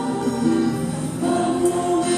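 Voices singing a slow hymn in a church, with long held notes that move from one pitch to the next.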